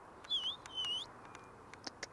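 Two short, high whistled notes in the first second, each dipping and then rising in pitch, with faint scattered ticks behind them.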